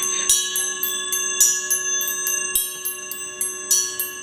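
Metal percussion struck in quick, light, irregular strokes, about three or four a second, bright and high. Several steady bell-like tones ring on underneath.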